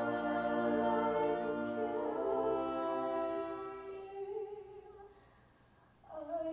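Female soloist singing long held notes over orchestral accompaniment. The music thins out and dies away to near silence just before the end.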